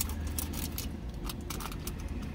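Paper food packaging crinkling and rustling in short, irregular strokes as it is handled and opened, over a steady low hum inside the car.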